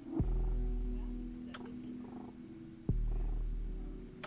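Domestic cat purring close to the microphone, in two long breaths that each start suddenly and fade away.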